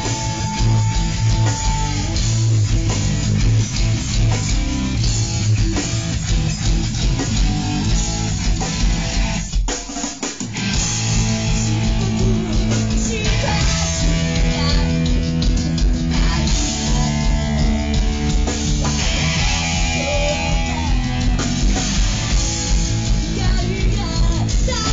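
Live rock band playing: distorted electric guitar, bass guitar and drum kit, loud and full. About ten seconds in the band drops out for roughly a second, then comes back in together.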